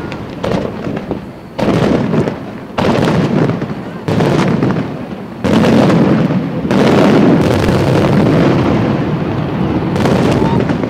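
Aerial firework shells bursting in quick succession, about six sudden bangs, each running on into a long roll of noise, with the bursts packing most densely in the second half.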